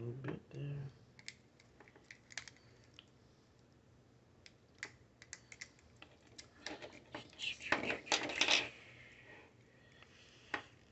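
Scattered light clicks and taps from a metal Slinky coil and hard plastic toy parts being handled and fitted together, with a denser run of rattling clicks about eight seconds in.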